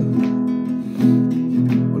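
Acoustic guitar strummed, a few strokes with the chord ringing between them.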